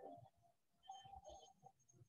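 Near silence, with faint scattered small clicks and taps.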